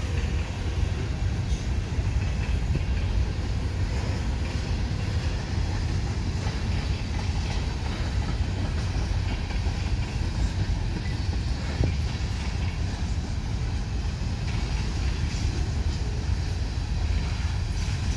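Freight train of covered hoppers and tank cars rolling steadily past: a continuous low rumble of steel wheels on rail, with an occasional knock as the cars pass.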